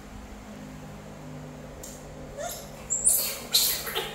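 Young macaques giving a short rising squeak, then two louder, harsh squeals near the end, while they feed on lotus seed pods.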